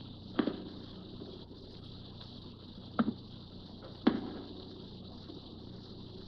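Three slow, unevenly spaced thuds of sound-effect footsteps from an old radio drama, over a faint tape hiss and hum.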